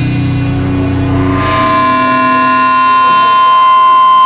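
Live doom metal band in a quiet passage after the drums stop: low held notes ring out and fade, and about a second and a half in a steady high sustained note comes in and swells louder.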